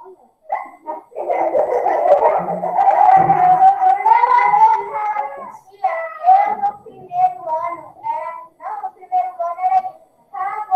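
A child's voice singing loudly over a video-call connection, holding a note that rises slightly about four seconds in, followed by choppy children's talk and vocalising.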